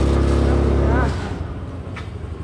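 Motor scooter engine running steadily just after being started, then dropping in level about a second in.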